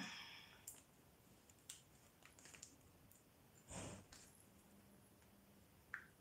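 Near silence, with faint clicks and scrapes of a small spatula working inside a plastic jar of nail product, and a soft breath-like rustle just before four seconds in.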